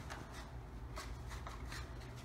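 Faint rustling and crinkling of folded construction paper being handled and opened out into a square column.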